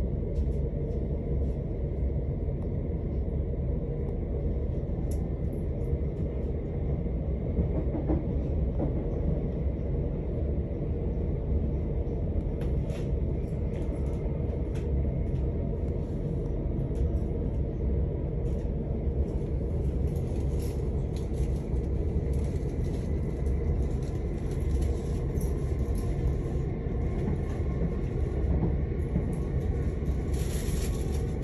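Steady low rumble of a passenger train running along the track, heard from inside the carriage, with scattered faint clicks that come more often in the second half.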